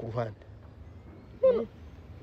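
A pause in conversation: a man's word trails off at the start, and one short vocal sound comes about a second and a half in, over a low steady background hum.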